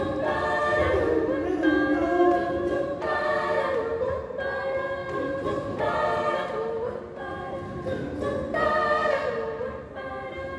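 A group of voices singing a cappella in several parts, repeating a short chanted phrase on syllables like "tutara" about every second or so.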